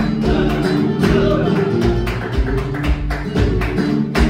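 Flamenco guitar playing bulerías, with palmas (rhythmic hand-clapping) marking the beat in steady, sharp claps.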